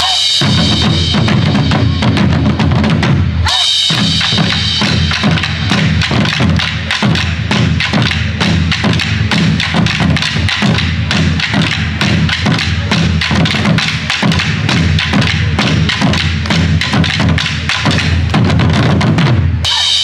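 Ensemble of Korean buk barrel drums struck with sticks by several players in a fast, driving rhythm, with two short breaks in the first few seconds.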